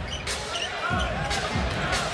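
A basketball dribbled on a hardwood court, three bounces about two-thirds of a second apart, over the steady noise of an arena crowd.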